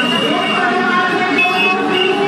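A woman's voice amplified through a loudspeaker system over street noise, with a short steady high tone about one and a half seconds in.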